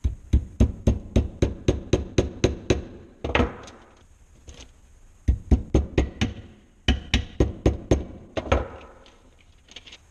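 Small hammer tapping nails around the toe of a shoe held on its last, tacking down the stiff leather toe cap. The taps come quickly, about four a second, in three runs with short pauses between.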